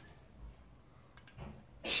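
A plastic parts bag rustling faintly as a hand rummages in it, with a few small clicks of handling and a louder rustle near the end.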